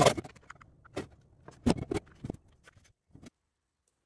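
A handful of short, sharp knocks and clatters of a steel mounting plate being handled and set against the hub motor's axle on a metal-topped workbench, spread over about three seconds, then the sound cuts out abruptly.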